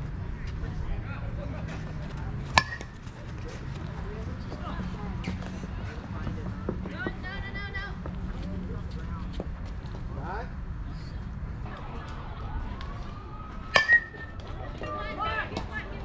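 A softball bat hitting the ball with a sharp, ringing ping about two and a half seconds in. A second, louder double crack comes near the end, over a background of players' shouts and chatter and a steady low hum.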